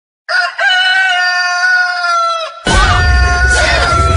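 Rooster crowing: a short first note, then one long, slightly falling call. About two and a half seconds in, music with a heavy bass comes in under the end of the crow.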